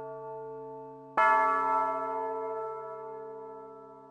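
A large bell struck about a second in, ringing on and slowly dying away over the fading tail of an earlier stroke.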